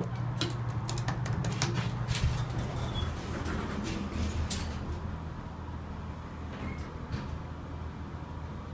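Montgomery elevator's sliding car door closing with scattered clicks and knocks, over a steady low hum from the elevator machinery. The hum drops to a lower pitch about three and a half seconds in, as the car gets under way.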